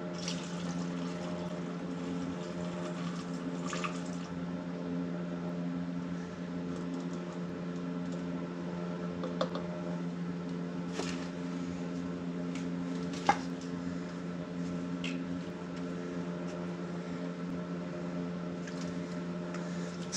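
Fuel oil from an oil-burner filter canister being poured through a plastic funnel into a plastic bottle, with a few light knocks, over a steady machine hum.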